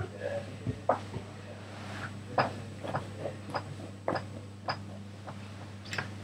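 Irregular short, sharp clicks and taps, about a dozen, over a steady low hum.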